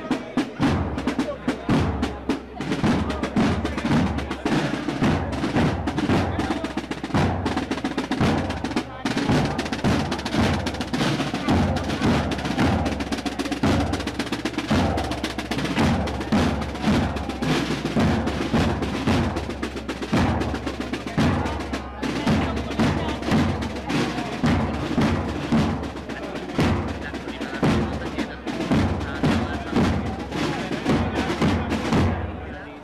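Processional band's drum section, snare drums with bass drum, playing a steady marching beat with snare rolls.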